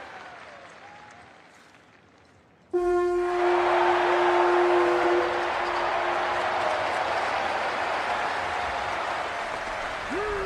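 A ram's-horn hunting horn blown in one long, steady note of about four seconds, starting suddenly about three seconds in, with a crowd cheering loudly that carries on after the note fades.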